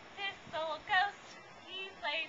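A woman's voice singing three short separate notes, the third the loudest, with a softer fourth near the end, in a sing-song counting of the ghosts.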